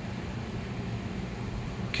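Steady low hum and hiss of background machine noise, unchanging throughout, with no speech.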